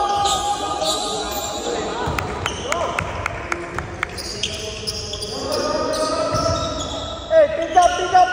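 Basketball game on a hardwood gym floor: a ball bouncing several times in the middle, sneakers squeaking, and players shouting, loudest near the end.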